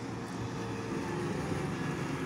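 Motor scooter engine running, growing gradually louder as it approaches.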